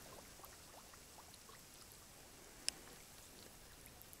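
Near silence on still water: a few faint drips and one short, sharp tick about two-thirds of the way in.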